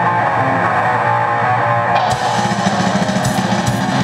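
Live metal band playing an instrumental passage: electric guitar holding notes, with cymbals and drums filling in from about halfway through.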